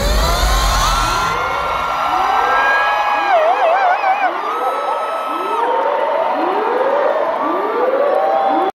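A siren-like sweep from the concert sound system, rising in pitch about once a second over and over, between songs. Over it come several long high held notes, one wavering in pitch near the middle.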